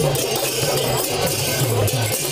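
Traditional devotional procession music: a hand drum beating with rattling metal percussion, over a continuous crowd din.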